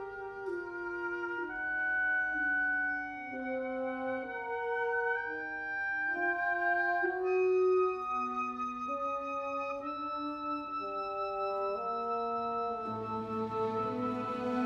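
Symphony orchestra playing a slow instrumental passage: a melody in long held notes moving step by step over sustained harmony, with a fuller, lower layer coming in near the end.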